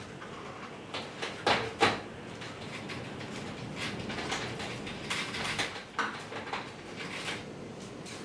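Small sponge roller loaded with thinned acrylic paint rolling across a stretched canvas, a steady soft swish, with two sharp knocks about a second and a half in.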